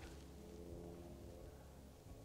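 Near silence, with a faint steady low hum.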